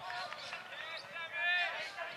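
Raised voices of footballers and spectators calling out during open play, loudest about a second and a half in.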